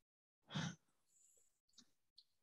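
Near silence on a video-call feed, broken once about half a second in by a brief soft noise, like a breath or a rustle near a microphone.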